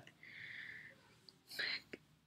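Quiet breathy sounds from a person between sentences: a soft hiss lasting under a second, then a shorter breathy puff about one and a half seconds in.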